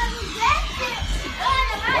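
Children's high, excited voices calling out over music with a low pulsing beat.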